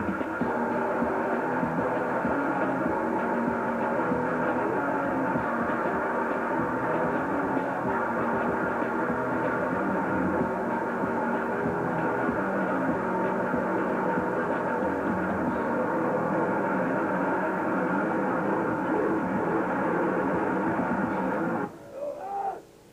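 Noisecore band playing live: an unbroken wall of distorted electric guitars and bass with drums, at a steady loud level, which cuts off abruptly near the end.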